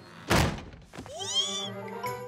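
Cartoon sound effects over background music: a single loud thud, then a pitched tone that swoops up and back down.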